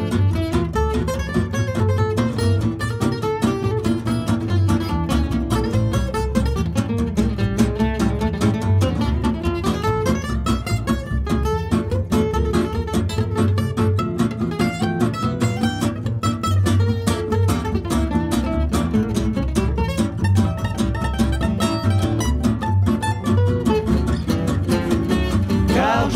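Gypsy-jazz (jazz manouche) instrumental break. A guitar plays a single-note solo over strummed rhythm guitar and a plucked upright double bass.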